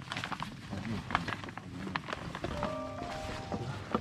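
Handling noise as an outboard motor in its fabric cover is hoisted out of a car boot: fabric rustling with scattered knocks and clicks, the sharpest about a second in. A steady pitched tone sounds for about a second from about two and a half seconds in.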